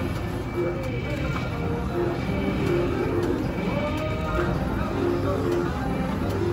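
Casino floor din: steady crowd chatter mixed with short electronic tones and jingles from slot machines, while the reels of a Bally three-reel slot spin.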